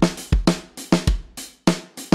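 Drum kit playing a steady groove: bass drum and snare strokes with cymbal or hi-hat, about three to four hits a second.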